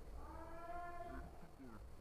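A faint, drawn-out cry at a steady pitch lasting under a second, followed by a short falling note near the end.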